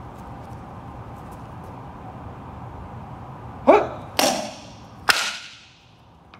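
A fist strike breaks a hand-held wooden taekwondo board about three and a half seconds in: a loud, sharp crack with a short rising shout. A second burst follows half a second later, and a further sharp crack like a clap comes about a second after the strike.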